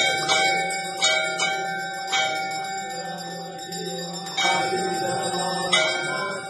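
Brass temple bell struck about seven times at uneven intervals during aarti, its ringing carrying on between strikes.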